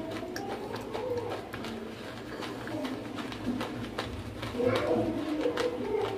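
Close-up chewing of dry baked-clay chunks, a run of sharp crunching clicks. A low, wavering cooing sound runs beneath it.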